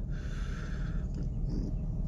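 A man taking a drag on a joint: a soft drawn-in breath hiss lasting about a second, then quieter breathing, over a steady low rumble.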